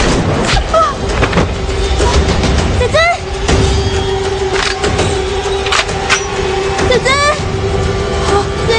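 Action-film fight soundtrack: a steady music drone over a low rumble, broken by sharp hits, with short pitched vocal cries about three and seven seconds in.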